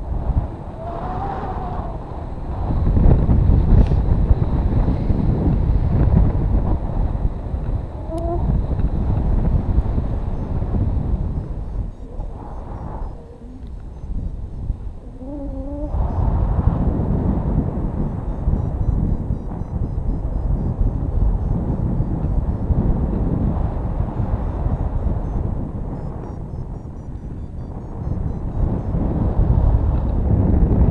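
Wind buffeting the microphone of a camera in flight under a paraglider: a loud, gusty low rumble that rises and falls, easing off twice for a couple of seconds. A few brief wavering tones sound over it.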